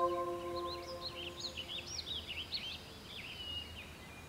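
Songbirds chirping in many quick, overlapping short calls, fading toward the end, while a held music chord dies away during the first second.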